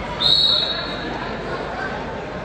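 A short, high referee's whistle blast of about two-thirds of a second, starting a moment in, over the chatter of a crowd in a gym.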